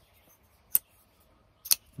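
Bestech Nuke titanium frame-lock flipper knife on bearings being flipped, two sharp clicks about a second apart as the blade swings and snaps into place. The action is very smooth, but the owner finds the detent a little light.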